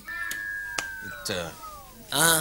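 A music-box tune from a carousel nightlight winding down, its notes sliding slowly lower in pitch, with two soft clicks early on and a short vocal sound about halfway through.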